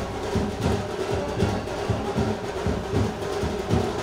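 Band music with a driving drum beat, about three strokes a second, over a steadily held note.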